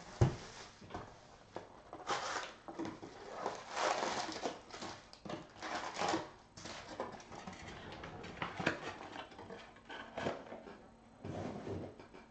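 Plastic shrink wrap crinkling as it is torn off a cardboard trading card box, then cardboard and shiny foil card packs rustling as the packs are pulled out of the box and set down on a table. A sharp knock just after the start is the loudest sound, and a few softer knocks follow near the end.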